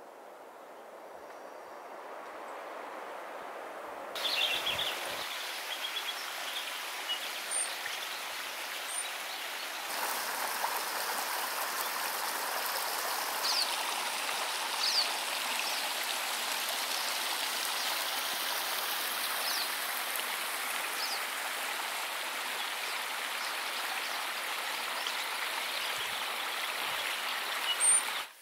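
Small stream running and splashing over rocks, a steady rush that fades in and grows louder in two steps over the first ten seconds. A few brief, high bird chirps sound over the water.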